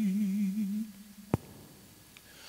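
A man's voice holding a sung note with a slow vibrato through a microphone, fading out just under a second in. A single sharp click comes about a second later.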